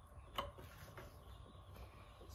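Quiet room hum with a sharp small click about half a second in and a fainter one about a second in, from small wiring parts being handled and fitted on the laser engraver's control board.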